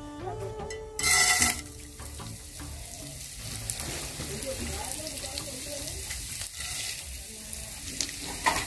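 Dry white grains tipped into hot oil in a non-stick frying pan: a loud burst of sizzling about a second in, settling into a steady sizzle with small crackles as they fry.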